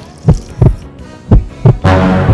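Heartbeat sound effect: two double thumps, about a second apart. Music with sustained low tones comes in near the end.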